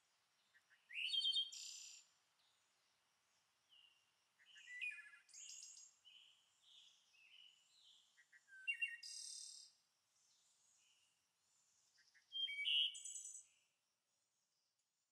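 Birds singing: several short bursts of chirps and trills, the loudest about a second in and near the end, with fainter notes in between.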